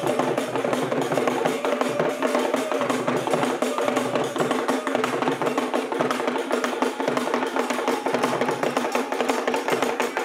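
Ghanaian traditional drum ensemble playing a steady, busy dance rhythm on wooden hand drums.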